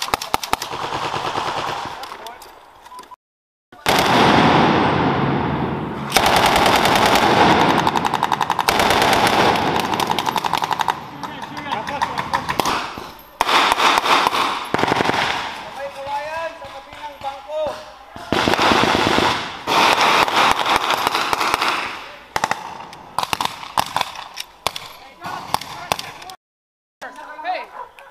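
Military rifles and a light machine gun firing blank rounds in long, rapid bursts of automatic fire, shot after shot, with voices heard between bursts.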